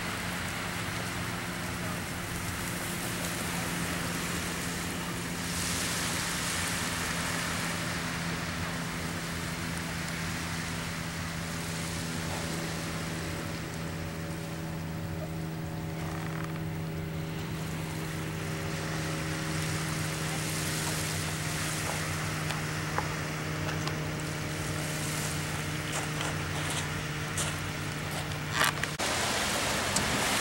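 Soft background music of long held chords, changing to a new chord about halfway through, over a steady rush of wind and surf; it all cuts off suddenly near the end.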